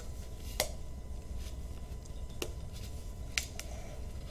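Cardboard packaging of a headset box being handled and worked open, giving a few scattered sharp clicks and taps over a steady low background hum.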